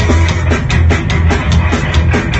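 Punk rock band playing live and loud: distorted electric guitars and bass over a drum kit keeping a fast, even beat, with no singing.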